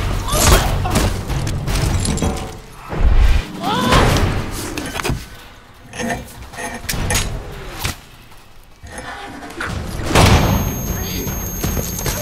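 Film fight sound effects: a series of heavy thuds and sharp impacts as bodies hit the sand, with grunting and strained cries between the blows.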